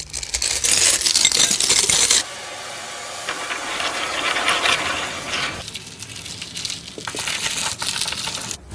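Loose metal coins clattering and jingling in a dense, continuous cascade, dropping to a quieter, lighter rattle about two seconds in.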